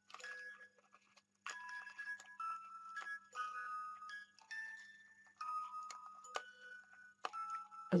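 Hand-cranked music box mechanism built into a greeting card, playing a melody of plucked metal notes. The cranking is uneven, so the tune comes in spurts with short breaks.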